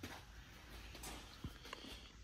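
Near silence: faint room tone, with one soft click about halfway through.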